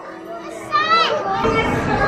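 A young child's short high-pitched exclamation, rising then falling in pitch, just before a second in, followed by the chatter of many people in a crowded hall.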